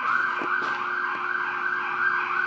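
Emergency vehicle siren sounding steadily, with a quick wavering under its main tone; it is taken for a police siren.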